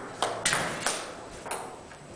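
Ping-pong ball in a rally played with wallets as paddles: about four sharp clicks of the ball off the table and the wallets, spaced further apart and growing fainter.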